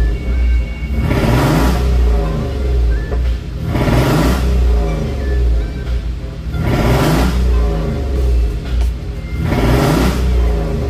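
Jeep Wrangler engine running after being hydrolocked, revved up and let back down about every three seconds. It sounds bad, and the owners take it for an engine with low compression.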